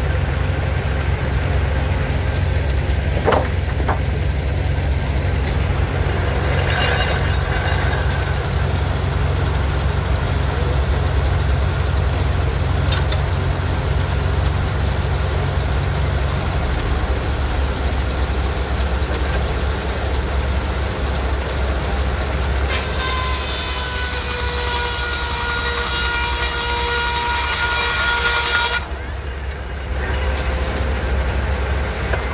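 Belt-driven circular sawmill powered by a Case steam engine, running with a steady low rumble. For about six seconds near the end, the big circular saw blade cuts through a log with a loud ringing whine whose pitch sags slightly under load. The whine stops abruptly as the blade comes out of the cut.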